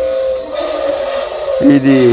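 Small electric gear motors of a toy radio-controlled excavator whirring steadily as the arm lifts the bucket, with a high, even whine. A child's voice cuts in near the end.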